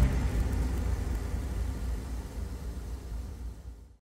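Low, rumbling wash left after electronic outro music stops, fading away steadily.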